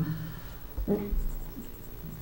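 Papers rustling and light knocks of handling on a tabletop close to a microphone, with a brief, faint vocal sound about a second in.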